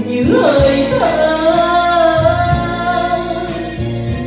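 Karaoke backing music of a slow Vietnamese ballad during an instrumental passage: one long melody note, sliding up at the start and then held with a slight waver, over steady accompaniment.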